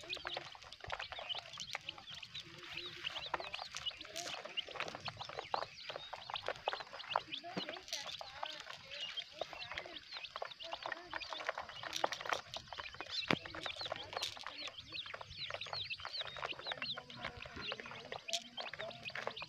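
A flock of young chicks peeping without pause: many short, high calls overlapping, with a few sharp clicks scattered among them.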